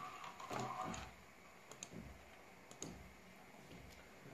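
Quiet room tone with a few faint, sparse clicks, and a brief faint voice sound in the first second.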